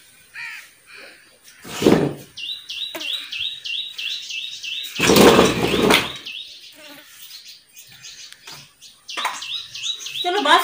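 A small bird chirping in a quick run of short notes, about four a second, from about two and a half seconds in and again near the end. Two loud whooshing bursts, about two and five seconds in, from a cloth bedsheet being shaken out over a cot.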